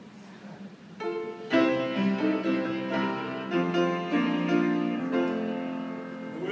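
Piano playing the introduction to a gospel song: a series of held chords that begins about a second in and changes every half-second or so.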